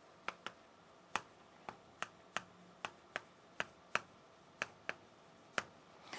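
Chalk clicking against a chalkboard while words are written: about a dozen short, faint, irregularly spaced clicks as the chalk strikes the board.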